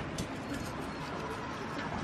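A bird calling over steady background noise.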